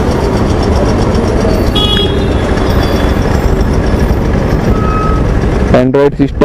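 Motorcycle ride through city traffic: a loud, steady rush of wind and engine noise, with short faint beeps about two seconds in and again near five seconds.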